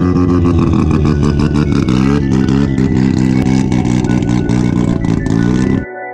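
Mazda RX-7's engine revving hard and held at high revs with a rapid stutter, cutting off suddenly near the end.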